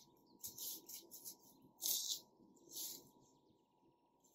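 Plastic cling film over a glass bowl crinkling in several short rustles as gloved hands press it down and lift the bowl; the loudest rustle comes about two seconds in, and the sound dies away after about three seconds.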